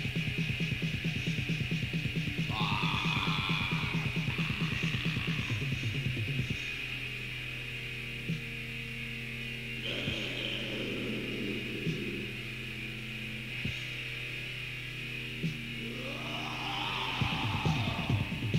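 Raw black metal from a lo-fi cassette demo: fast, dense drumming under distorted guitar, breaking about six seconds in to a held low chord with sparse single drum hits and harsh shrieked vocals. The fast drumming comes back in near the end.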